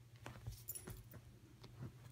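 Small dog's metal collar tag jingling faintly, with soft scuffs and clicks as the dog moves about on a couch.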